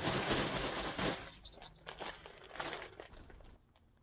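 Clear plastic packaging rustling and crinkling as a large yarn cake is lifted out and handled. The rustling is dense for about a second, then breaks into scattered crinkles and stops shortly before the end.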